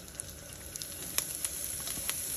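Pork pieces sizzling in hot oil in a wok, with scattered sharp crackles and pops, getting gradually louder as chopped garlic, peppers and herbs start to drop into the oil.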